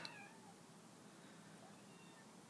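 A cat meowing faintly, with short calls just after the start and near the end, over an otherwise near-silent room.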